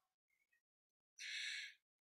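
A woman's short, faint in-breath, about half a second long, a little over a second in, otherwise near silence.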